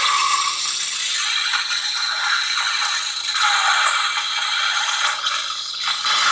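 Lightsaber blade-lockup sound effect from a Plecter Labs CFX soundboard, played through a 28mm speaker while the auxiliary button is held down: a loud, continuous crackling that starts abruptly and holds steady.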